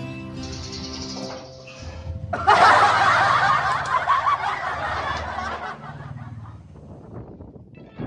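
Background music, then about two and a half seconds in a sudden burst of canned audience laughter that swells and fades away over about three seconds.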